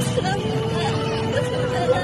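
A steady hum, with faint voices in the background.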